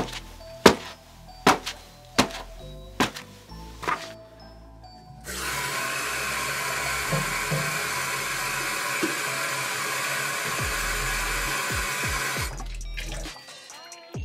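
Tap water running from a sink faucet into a jar as a steady rush, starting about five seconds in and shutting off about twelve seconds in. Before it, a series of sharp knocks comes roughly once every three-quarters of a second.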